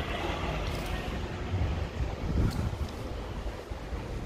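Low rumbling handling noise on a handheld phone microphone carried while walking, with a few faint taps.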